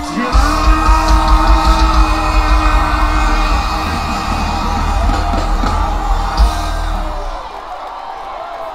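Live soca band with singing, held notes over a pounding bass beat, and yells and whoops. The music fades out about seven seconds in as the song ends.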